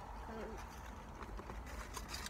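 Quiet eating sounds: a foil burger wrapper crinkling and small mouth clicks as she bites and chews, over a low steady car-interior hum, with a brief faint voice about half a second in.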